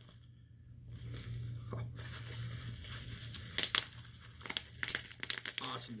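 Packaging crinkling and rustling as products are handled and lifted out of a box, with a run of sharp clicks and taps in the second half.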